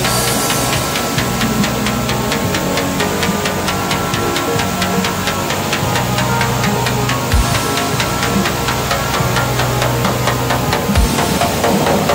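Background electronic music with a fast, steady beat over sustained synth tones.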